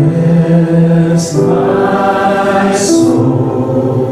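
Live worship band music: sung vocals holding long notes over piano and electric guitar accompaniment.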